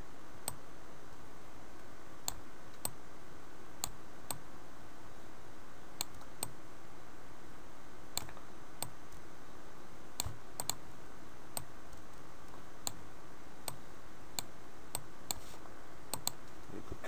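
Irregular single and paired clicks of a computer mouse and keyboard, about twenty over the stretch, over a steady background hiss.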